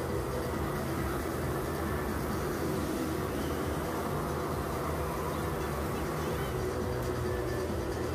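Motocross motorcycle engines running steadily in a show arena, a continuous engine drone at an even level.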